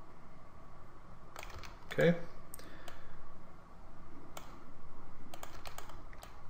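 Scattered sharp clicks of computer keys and mouse buttons, with a quick run of clicks near the end, over a steady low hiss.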